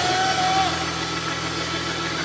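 Church band holding a steady low chord between drum hits, with a short held higher note in the first second and voices from the congregation.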